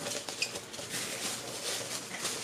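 Plastic and cardboard packaging of a boxed Funko Pop figure rustling and crinkling as it is handled, with small clicks throughout.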